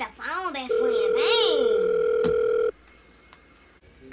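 Telephone ringback tone heard by the caller: one steady beep lasting about two seconds, with a woman's voice over its first part, stopping abruptly.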